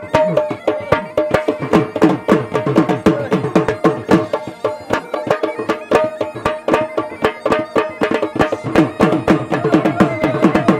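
Dhol drum beaten in a fast, steady rhythm of several strokes a second, with a held pitched tone running over the beat. Near the end a man shouts "boom, boom" and laughs.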